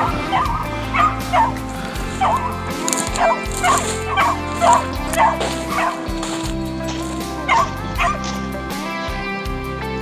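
Hunting dog barking and yipping in a string of short calls, about two a second, with a brief pause just past the middle, over background music with held notes.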